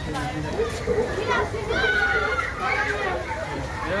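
Crowd of people talking, with children's high voices calling out as they play.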